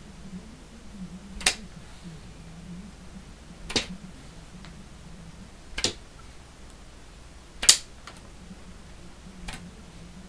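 Five sharp clicks about two seconds apart, the fourth the loudest: playing cards thrown one after another at a watermelon, one of them sticking into the rind.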